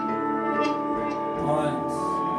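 A live band playing: strummed acoustic guitar, bass, keyboard and drums, with a held keyboard note and a few cymbal hits.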